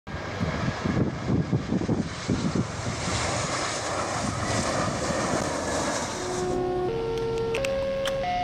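Jet airliner landing on a runway: a steady rush of jet engine noise, with low, irregular rumbles in the first couple of seconds. About six and a half seconds in, sustained musical tones come in over it.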